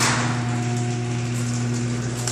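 A steady low electrical hum, one even pitch with fainter overtones, over a light hiss, with a short knock right at the start.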